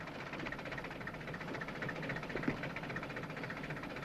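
Black taxi cab's engine idling steadily at the kerb, with one small click about two and a half seconds in.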